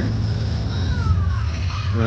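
Steady low drone of fairground machinery running, with faint falling high-pitched tones about a second in and again near the end.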